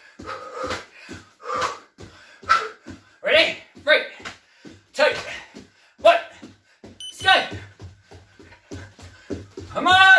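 A man's short, forceful vocal exhalations and grunts of effort during a fast jumping exercise, roughly one a second in the second half, amid quick thuds of bare feet landing on a wooden floor.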